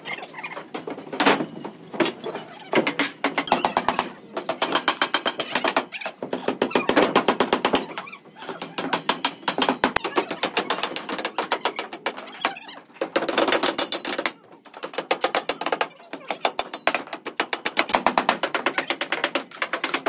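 Hammering and tool knocks on formwork boards and concrete slabs: fast runs of sharp knocks, about a dozen a second, in bursts of one to two seconds with short gaps.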